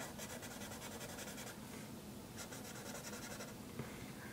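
A pen scratching across paper in two runs of quick back-and-forth strokes, with a short pause between them.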